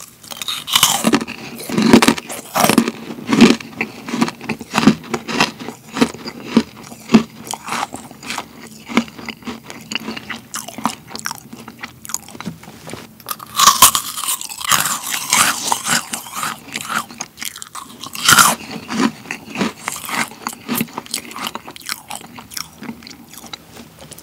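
Close-miked crunching and chewing of a meringue cookie with a pretzel pressed onto it, dense crisp crackles throughout, with louder crunches about 14 and 18 seconds in.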